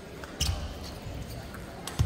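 Table tennis rally: a celluloid-type ball struck by rubber-faced paddles and bouncing on the table, heard as sharp clicks, the loudest about half a second in and another near the end, each with a dull thud beneath.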